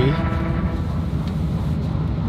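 Steady low rumble of background noise inside a car's cabin.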